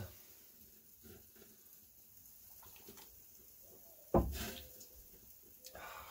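Quiet sips and swallows of beer, then a sudden loud breathy burst about four seconds in that fades over most of a second.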